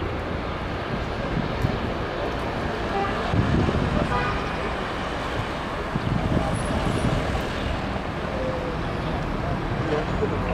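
Steady road traffic, with two louder vehicle passes about three and a half and six and a half seconds in, a car and a motor scooter among them.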